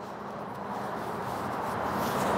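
Steady rushing background noise with no distinct events, slowly growing louder.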